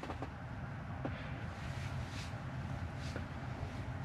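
Steady low hum of a stationary electric car's cabin, with a few faint taps of a fingertip on the touchscreen.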